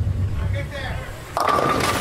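Bowling ball rolling down a wooden lane with a low rumble, then striking the pins about one and a half seconds in with a sudden crash and the clatter of falling pins.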